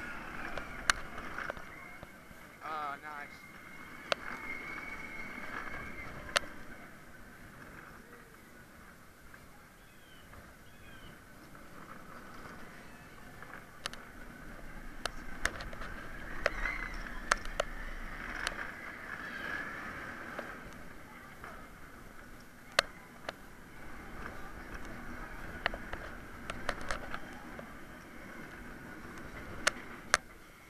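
Vekoma inverted roller coaster train running along its track, heard from on board: a steady rumble with many sharp clacks and a short fast rattle about three seconds in. Riders' voices call out over it around the middle.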